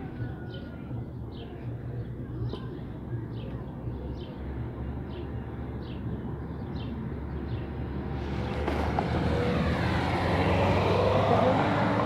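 A road vehicle approaching along the street, its engine and tyre noise swelling steadily over the last few seconds, over a steady low traffic hum.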